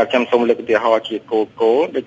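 Speech only: a person talking in Khmer without pause, with a thin, radio-like sound.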